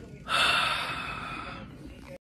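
A man's loud, gasping sob-like breath through a surgical face mask, starting about a third of a second in and tapering off over about a second and a half as he breaks down crying.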